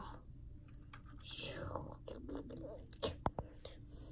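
Faint breathy mouth noises, whisper-like, with a few soft clicks and taps of plastic LEGO toys being handled; a couple of sharper ticks come a little after three seconds.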